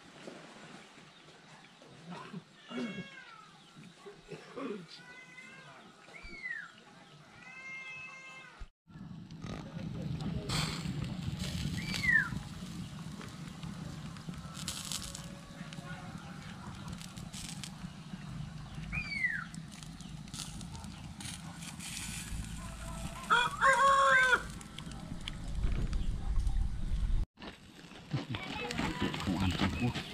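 Roosters crowing and chickens calling, with the loudest crow a little after two-thirds of the way through. From about a third of the way in, a low steady rumble runs underneath, and there are two short falling chirps.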